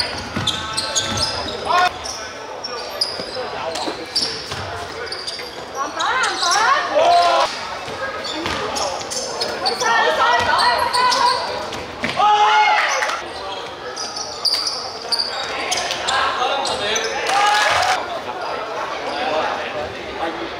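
Basketball game in a sports hall: the ball bouncing on the hardwood court amid players running, with loud shouts from players and onlookers that come and go, echoing in the large hall.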